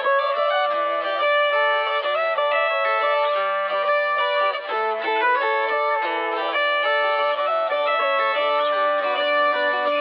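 Acoustic guitar melody playing alone, without drums or bass, in B minor at 90 BPM: the intro of a hip-hop type beat.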